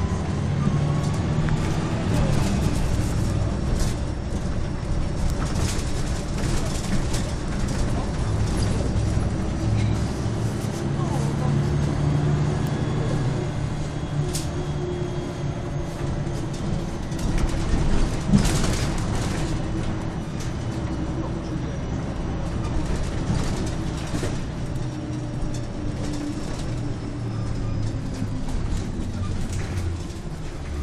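Ride inside a Volvo B10MA articulated bus with its six-cylinder underfloor diesel running, the engine note rising and falling as the bus pulls away and slows. Body and door rattles are heard throughout, with a louder knock about 18 seconds in.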